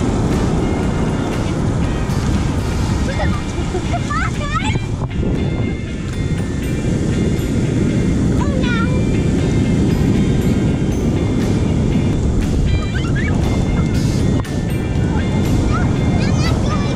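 Shallow surf washing around the feet and wind rumbling on the microphone, under background music, with a young child's voice rising briefly a few times.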